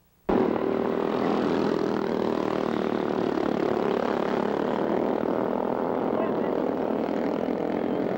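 Small go-kart engines running steadily, a loud buzzing drone with voices mixed in. It cuts in abruptly about a third of a second in.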